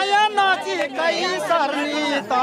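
Voices at close range in a crowd: one man's voice to the fore, with other people talking over it.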